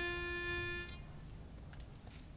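A pitch pipe sounding one steady held reed note that cuts off about a second in, followed by faint room noise.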